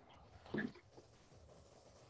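Faint computer keyboard typing, with a brief quietly spoken "okay" about half a second in.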